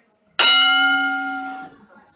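Electronic chime of a parliamentary voting system: one steady pitched tone that starts suddenly about half a second in and fades over about a second, signalling that an electronic vote has opened.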